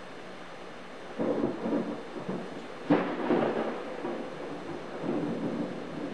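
Thunder over a steady hiss of rain. A rumble starts about a second in, a sharp crack comes near three seconds and is the loudest moment, and the thunder rolls on for a couple of seconds before fading back to the rain.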